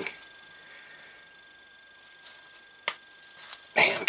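Quiet room tone with a faint steady high-pitched whine, broken by a single sharp click about three seconds in and a few faint small handling sounds.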